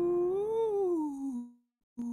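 A man's singing voice holding one note that swells up in pitch and then slides down below where it started, cutting off about one and a half seconds in.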